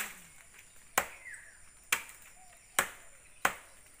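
Sharp chopping knocks, five of them roughly a second apart, each dying away quickly, like blade strokes on wood.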